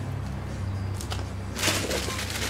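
A short rustle of packing paper in a cardboard box near the end, after a single light click about a second in, over a steady low hum.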